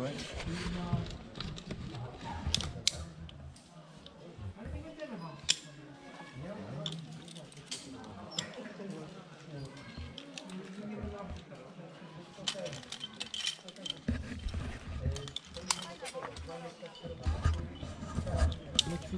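Metal carabiners and climbing hardware clicking and clinking at irregular intervals as rope gear is handled and re-clipped, with low voices underneath.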